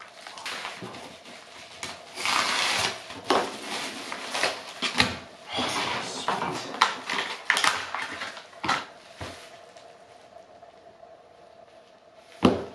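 Packaging being handled and opened: crinkling of plastic and paper in irregular bursts, with many sharp clicks of small metal tools being set down, dying away about nine seconds in.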